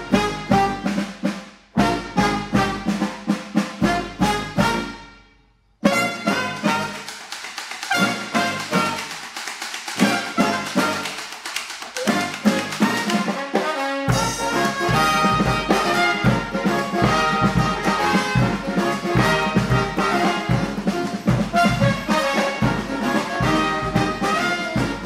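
Acoustic funk brass band playing an instrumental passage on trumpets, trombone, saxophone and sousaphone over drums and cymbals. It opens with short punched ensemble hits and a brief break, then settles into continuous playing. A heavy bass line and drums come in a little over halfway through.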